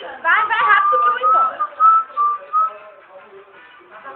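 A person whistling a short run of notes: a few quick upward swoops, then a single clear tone stepping up and down that ends before three seconds in. Voices sound faintly behind it.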